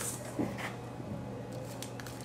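Faint knocks and light handling noise as a mirror is stood upright on a sheet of wood veneer on a worktable, over a steady low hum.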